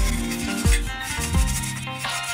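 Background music with a beat about every two-thirds of a second over held bass notes.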